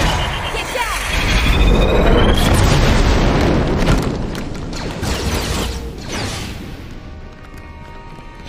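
An explosion sound effect: a sudden boom followed by a deep rumble that peaks a couple of seconds in and then fades, over dramatic orchestral score.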